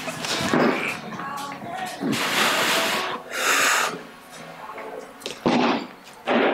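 A weightlifter's forceful breathing through a barbell clean and jerk: two long, hard exhales a little past the middle, then a single sharp thud near the end at the catch of the jerk.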